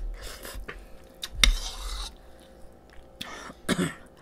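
A person coughing and clearing their throat at a table, the loudest burst about a second and a half in, with light clinks of a spoon and dishes from eating.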